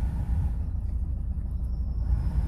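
Steady low rumble of a Renault Mégane Scénic engine idling.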